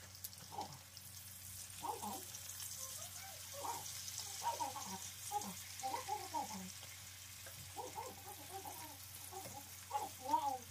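Diced potatoes frying in hot oil in a stainless-steel pan, a steady sizzling hiss.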